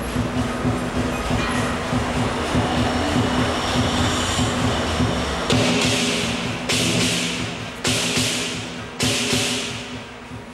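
Lion dance percussion: a lion drum beating a fast, steady rhythm, joined from about halfway by four long cymbal crashes a little over a second apart.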